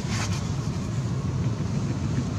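Wind rumbling steadily on the microphone, with a short burst of hiss about a quarter second in.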